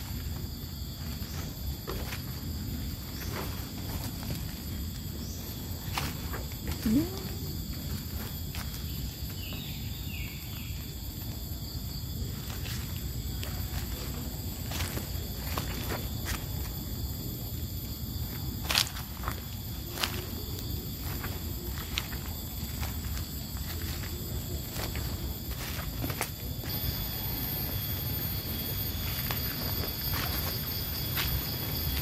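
Footsteps crunching through dry bamboo leaf litter, with frequent snaps and crackles of twigs and leaves, over a steady low rush and a constant high insect hum. A brief rising squeak about seven seconds in is the loudest moment, and there is a sharper crack near the twentieth second.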